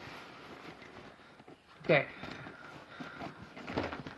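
Faint rustling of a padded fabric tackle bag being handled close to the microphone, with a few soft ticks near the end.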